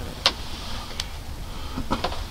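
Three short, sharp clicks or taps, about a quarter second in, a second in and near the end, over a low steady rumble.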